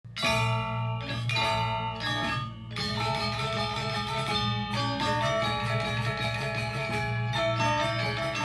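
Balinese gamelan orchestra playing: bronze metallophones struck together in three ringing accents about a second apart, then carrying on in a fast, busy passage of bright metallic tones over a steady low hum.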